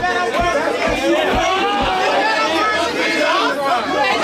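Crowd of people talking and calling out over each other, with dance music underneath whose steady low beat, about two a second, is plain in the first two seconds.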